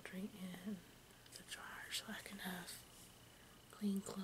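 A woman talking softly in a low, hushed voice, in two short phrases; nothing but speech.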